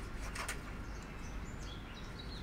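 Small birds chirping faintly in the background over a steady outdoor noise floor, with one brief sharp sound about half a second in.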